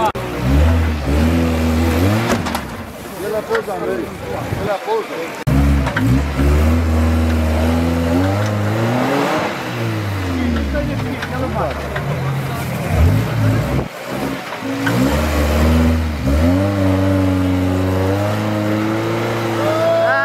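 Engine of a modified off-road car revving hard and unevenly as it claws up a steep dirt slope. The revs rise and fall over and over, with two brief sudden drops.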